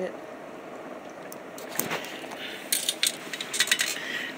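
Hand-pumped spray bottle misting a woodlouse enclosure to keep its humidity up: a faint hiss, then from about two seconds in a cluster of quick trigger clicks and short sprays.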